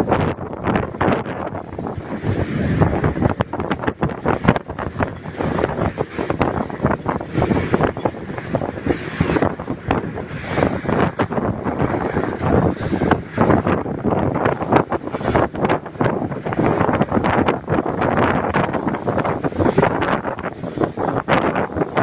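Heavy wind buffeting a phone microphone on the open load bed of a moving truck, over the truck's running and road noise. Many short knocks and rattles run through it.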